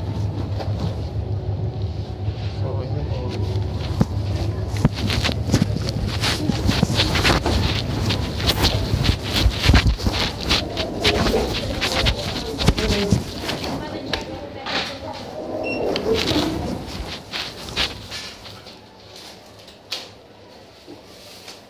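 Handling noise from a phone recording with its picture covered: dense rustling, clicks and knocks on the microphone, with muffled, unclear voices in the middle and a low steady hum in the first half.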